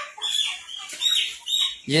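Chickens in a poultry shed calling: three short, high cheeps about half a second to a second apart.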